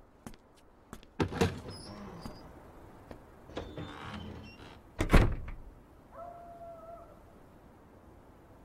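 Wooden door sounds: small clicks and a knock about a second in, then the loudest thud about five seconds in, like a door being pulled shut. A short steady tone follows about a second later.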